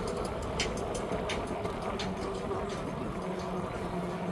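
Footsteps of someone walking on a paved boardwalk, a step about every two-thirds of a second, over a steady low hum.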